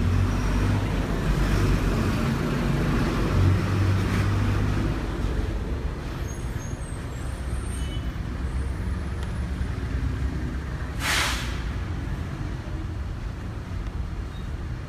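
A heavy road vehicle's engine rumbling deep and loud, strongest in the first five seconds, then easing. A short, sharp hiss of air brakes comes about eleven seconds in.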